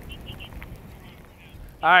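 Quiet outdoor background with a few faint, short high chirps, then a man's voice near the end.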